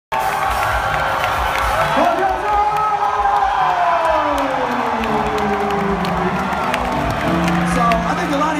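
Live music played loud through a festival PA: a long tone falls slowly in pitch over a low pulsing beat, while a crowd cheers and shouts.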